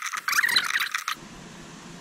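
Socket ratchet clicking rapidly as it turns a bolt into the A-pillar grab handle, stopping about a second in.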